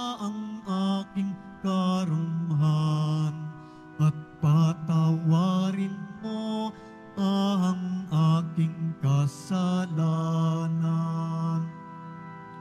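A slow hymn: a single voice sings drawn-out phrases with vibrato over steady held accompanying chords.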